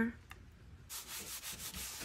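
A damp sponge rubs over a potter's wheel bat in repeated wiping strokes. The sound starts about a second in, after a nearly quiet moment.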